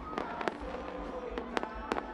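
Fireworks going off: a string of sharp pops and bangs at irregular intervals, with faint music underneath.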